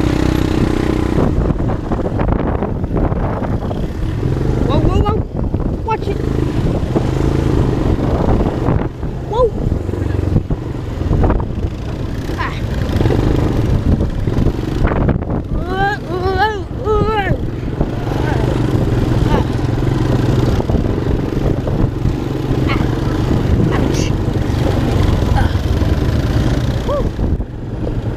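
ATV engine running steadily as the quad rides a bumpy dirt trail, with a constant rush of noise over it.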